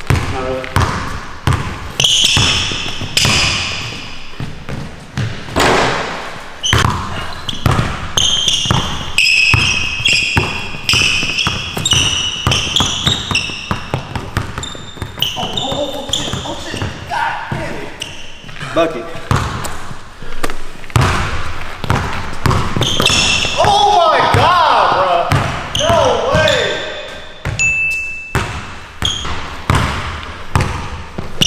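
A basketball dribbled on a hardwood gym floor in a long run of sharp bounces, with short high squeaks from sneakers on the court.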